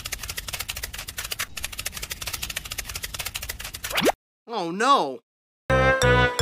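Rapid, even dry clicking, many clicks a second, for about four seconds. It is followed by a short warbling, voice-like sound effect, and music starts right at the end.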